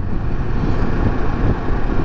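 Kawasaki Versys 650 parallel-twin motorcycle riding along a street: a steady, loud rush of engine, road and wind noise, with uneven low rumbling from wind on the microphone.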